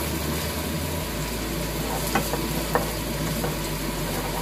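Chopped garlic, onion and ginger frying in oil in a nonstick wok, a steady sizzle, while a wooden spoon stirs them, with a couple of light clicks about halfway through.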